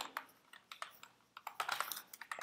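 Computer keyboard keystrokes: a few scattered key clicks, then a quicker run of typing in the second half.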